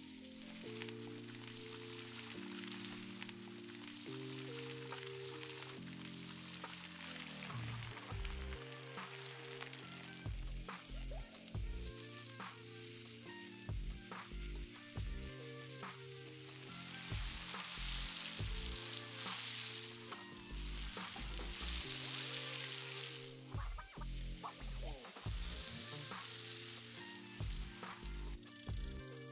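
Hot oil and ghee sizzling as whole spices fry in a nonstick pan, with a spatula stirring through them. A green coriander-mint-chilli paste then fries in the oil, and the sizzling grows louder in the second half.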